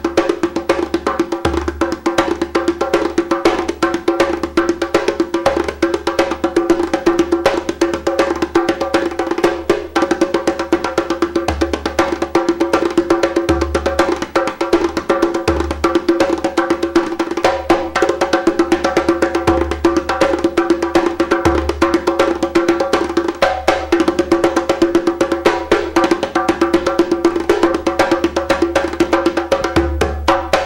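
Djembe played by hand in a fast, continuous rhythm of dense strokes.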